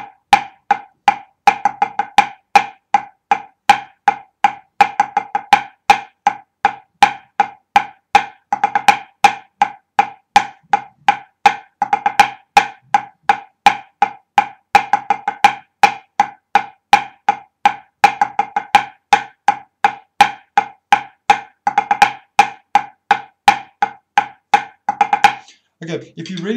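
Drumsticks playing a pipe band snare drumming exercise built on the Swiss ruff, four bars twice through: a steady, rhythmic stream of sharp strokes in triplet groups, with accents and quick grace-note ruffs. Each stroke is a crisp knock with a clear ring. The playing stops just before the end.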